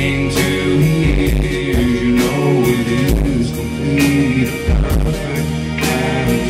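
Live rock band playing a slow song: electric guitar, bass, keyboards and drums with steady cymbal hits, and a man singing held notes into the microphone.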